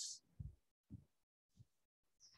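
Near silence broken by three faint, short low thumps about half a second apart.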